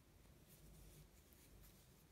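Near silence with faint rustling and scratching of a crochet hook pulling doubled yarn through stitches.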